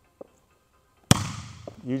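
Palm striking a volleyball on a serve: one sharp slap about a second in, with a short echo from the gym hall behind it.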